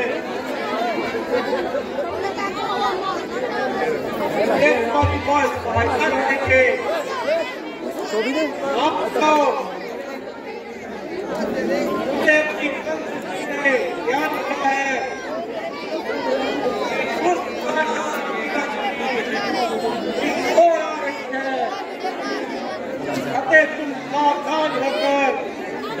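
Speech throughout: several voices talking, with no other sound standing out.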